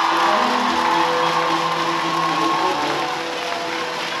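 A large crowd cheering and clapping, with music playing under it.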